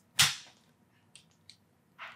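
Handheld chiropractic adjusting instrument firing a single sharp snap into the upper trapezius trigger point about a quarter second in, followed by two faint ticks about a second later.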